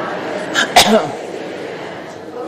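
A single sneeze close to the microphone, a sharp loud burst about three quarters of a second in.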